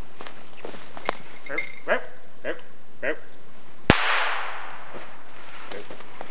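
A single shotgun shot about four seconds in, its report echoing and dying away over about a second. Before it come four short falling calls about half a second apart, and a few small cracks of twigs.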